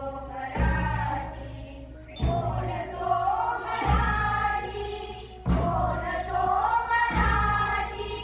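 A group of voices singing to musical accompaniment, with a heavy beat about every second and a half.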